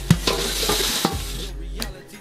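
Wooden paddle stirring dry wild rice in a large metal pot: a dense rustling and scraping of grains against the metal, with a couple of sharp knocks, stopping about one and a half seconds in. Music plays underneath.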